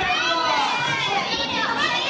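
Several high-pitched voices calling and shouting over one another at ringside, overlapping continuously, in a large hall.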